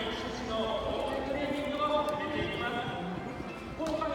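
People talking, several voices at once.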